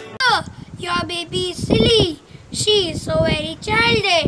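A young girl's voice singing unaccompanied, in short phrases that each slide down in pitch.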